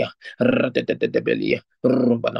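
A man praying aloud in rapid, run-together syllables, speaking in tongues, with two brief breaths between phrases.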